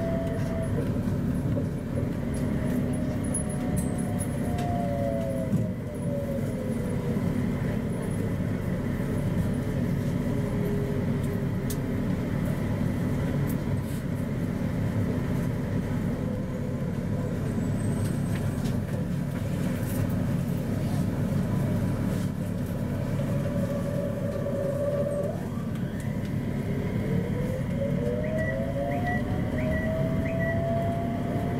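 Rubber-tyred Mitsubishi Crystal Mover LRT train running, heard from inside the car: a steady rumble of tyres on the concrete guideway, with an electric motor whine that glides down in pitch over the first several seconds as the train slows, then rises again in the last few seconds as it picks up speed.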